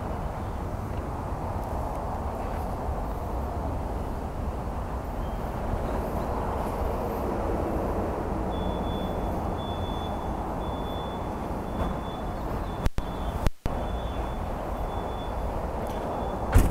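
1982 Corvette's 350 cubic-inch Cross-Fire Injection V8 idling steadily. The sound cuts out briefly twice near the end.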